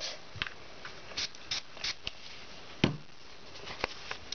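A sheet of book paper being handled and moved on a plastic craft mat: several short papery rustles, then two light taps near the end.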